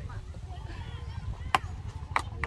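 A ping-pong ball landing, one sharp click about a second and a half in, over faint background chatter.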